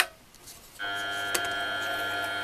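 A click of the mini milling machine's start switch, then about a second in its 550 W motor and head gearbox start and run at low speed with a steady whirring whine. The whine is the gear noise the owner finds very noisy and means to investigate.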